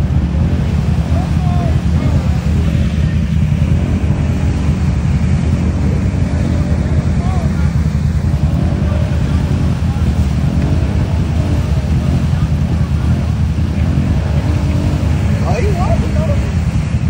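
An ATV engine running hard and steadily as the quad churns through a deep mud hole, its spinning tires throwing mud.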